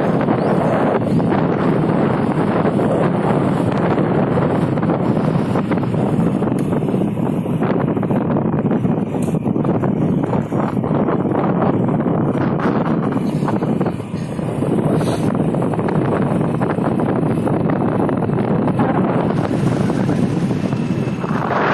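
Wind buffeting the microphone on a moving motorcycle, a loud steady rush with road and engine noise mixed in, dipping briefly about fourteen seconds in.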